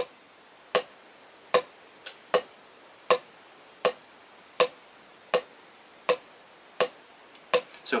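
Drumsticks playing tap strokes on a practice pad: about ten short, sharp clicks, evenly spaced at a little over one a second, with the sticks starting only two to three inches above the pad.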